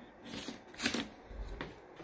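Handling noise: a few short rustles and scrapes as an object is grabbed and moved by hand, the loudest about a second in.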